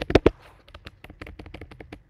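Computer keyboard typing: a quick run of keystrokes, a few louder ones at the start, then lighter, closely spaced clicks.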